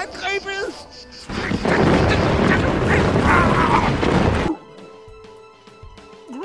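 A loud crashing, rushing noise that starts about a second in, has high cries over it, lasts about three seconds and cuts off suddenly. Short voiced cries come before it, and quieter music follows.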